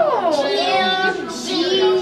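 A child's voice in a long, drawn-out sing-song call with no words, sliding down in pitch and then held.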